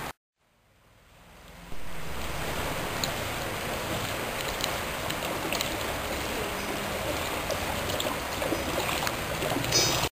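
Shallow floodwater sloshing and splashing as people wade through it, over a steady outdoor rush. The sound fades in from silence over the first couple of seconds.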